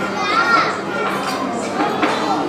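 Busy dining room chatter, many voices overlapping, with a small child's high voice rising and falling about half a second in.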